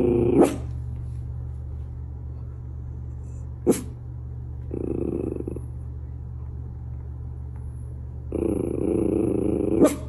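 Miniature schnauzer growling in two drawn-out stretches, a short one about five seconds in and a longer, louder one near the end, after a brief outburst at the start. A few sharp clicks are heard, over a steady low hum.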